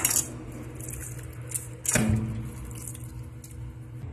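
Kitchen utensils handled on a counter: light clicks and taps, with one sharp metallic clink and short ring about two seconds in, over a faint steady low hum.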